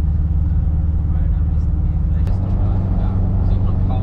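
Camper van driving, its engine drone and road noise heard inside the cabin, steady, with a sudden change in pitch a little over two seconds in where the footage cuts from a city street to the motorway.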